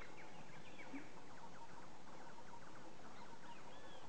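Bird calls: many short chirps and small arched notes over a steady hiss.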